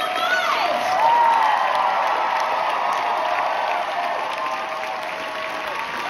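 Theatre audience applauding steadily, with cheering voices rising over the clapping in the first couple of seconds.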